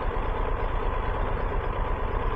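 Triumph Tiger 1200 Rally Pro's three-cylinder engine idling steadily in neutral with the bike at a standstill.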